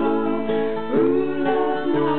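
Acoustic guitar strumming a song, with a voice singing along.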